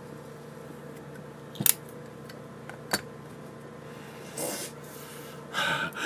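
Two sharp clicks about a second apart over a faint steady hum, then a man breathing out noisily through the nose twice near the end.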